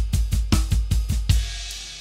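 Drum kit playing a sixteenth-note unison exercise, about eight strokes a second: right hand steady on the ride cymbal while bass drum, hi-hat pedal and left-hand snare play in three-limb combinations. A little past halfway the pattern stops on a last hit, and the cymbals ring out and fade.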